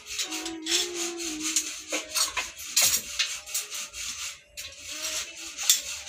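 Irregular scraping and rasping of steel rebar being worked by hand, with metal rubbing on metal in quick uneven strokes.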